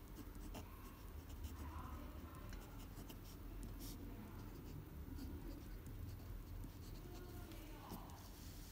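Pen scratching faintly on paper as cursive words are handwritten, in short strokes with light ticks of the nib, over a low steady hum.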